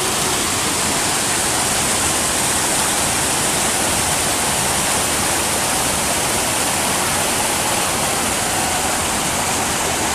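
Creek water rushing over rocks and a small cascade, a steady, even rush with no breaks.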